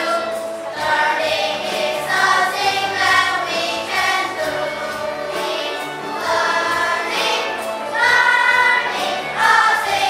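A class of fifth-grade children singing an English song together as a choir, with instrumental accompaniment.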